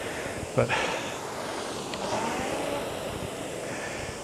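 Concept2 RowErg air-resistance flywheel whirring in a steady whoosh during an easy stroke at a low rate of 18 strokes per minute.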